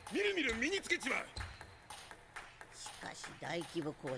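Table-tennis ball struck back and forth in a rally: a few sharp, light pings in the middle of the stretch, between lines of Japanese dialogue from the animated show.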